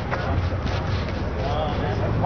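A hand trigger spray bottle spritzing cleaner in a few quick squirts during the first second, over a steady low rumble.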